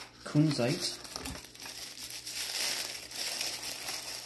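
Tissue paper crinkling and rustling as it is pulled open from around a small crystal, starting about a second and a half in. A brief voice sounds near the start.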